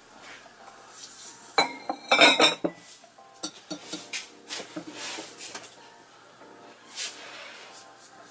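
Stoneware pieces clinking and knocking against each other as they are handled, with a quick run of sharp, ringing clinks about two seconds in, then lighter knocks.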